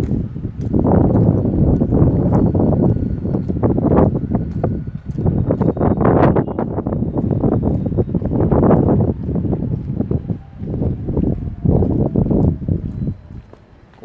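Wind buffeting the microphone in gusts: a loud, uneven noise that rises and falls and eases off just before the end.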